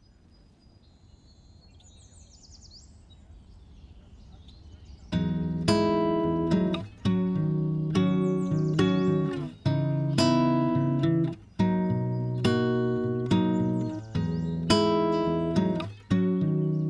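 Soundtrack music: a faint wash with a few high chirps swells for about five seconds, then strummed guitar chords come in, struck about every one and a half to two seconds and left to ring.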